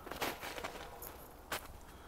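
Footsteps on snow-covered ground: a few soft steps, with a louder one about one and a half seconds in.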